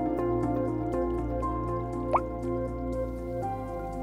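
Water dripping, with one clearer drop that rises in pitch about two seconds in, over a dark ambient music score of steady held tones and a low drone.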